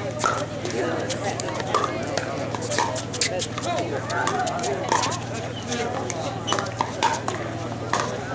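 Pickleball paddles striking a hard plastic ball during a rally: sharp pocks every second or so, over a murmur of voices.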